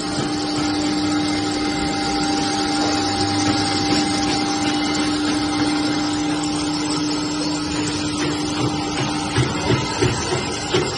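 Fish-feed pellet making machine running under load with a steady motor hum over dense mechanical noise as it mixes feed mash and extrudes pellets. The hum fades near the end, where a few short knocks come through.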